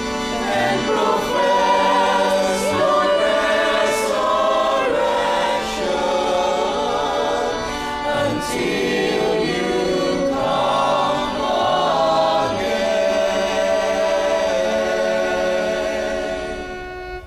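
Choir singing the memorial acclamation of the Catholic Mass, in sustained sung phrases.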